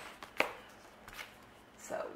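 A single sharp tap, with a smaller click just before it, followed by faint handling noise.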